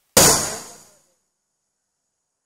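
A single loud hit that starts abruptly and dies away within about a second, with a faint high ring trailing after it, between stretches of dead silence: an impact sound effect edited into the soundtrack.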